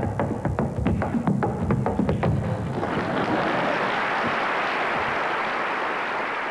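A man's mouth imitation, into a microphone, of an old Model T Ford engine chugging as the car pulls away, with sharp pops about four times a second. About three seconds in, the imitation stops and audience applause takes over, slowly fading.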